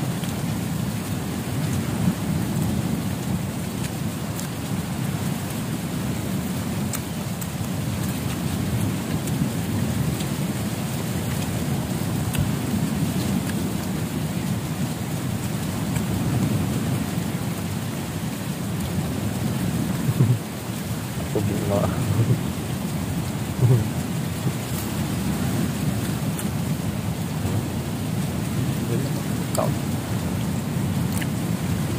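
A steady low rushing noise runs throughout, with a few brief louder sounds about two-thirds of the way through.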